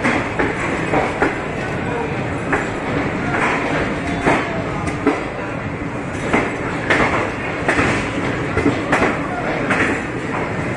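Express train coaches running through a station, heard from on board: a steady rumble of the train in motion with irregular sharp clicks from the wheels crossing rail joints and points.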